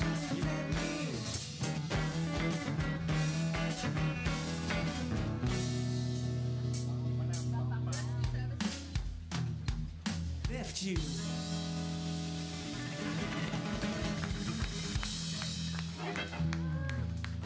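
Live rock band playing: electric guitar, electric bass and drum kit, with long held chords under steady drum hits.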